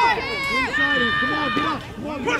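Several voices shouting over one another, with one high-pitched voice holding a long drawn-out call for about a second near the middle.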